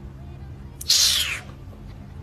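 One short hiss about a second in, lasting about half a second and falling slightly in pitch, over faint background music.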